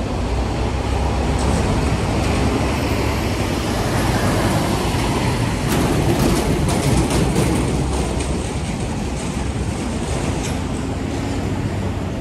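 City street traffic with a box truck passing close by, its low engine rumble swelling through the middle, and a run of sharp clicks and rattles about six seconds in.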